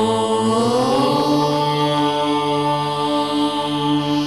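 Devotional chant in a channel's signature music: a long held vocal note over a steady drone, its pitch gliding up about a second in and then held.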